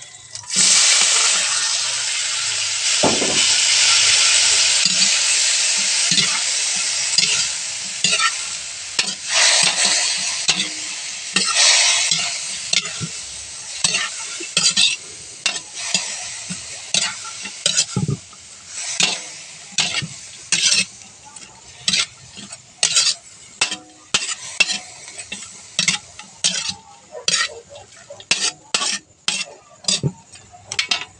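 Sliced bitter melon (ampalaya) hitting hot oil in a wok with frying onion and garlic: a loud sizzle starts about half a second in and slowly dies down. A metal spatula stirs the vegetables, its strokes scraping and tapping the wok more and more often toward the end.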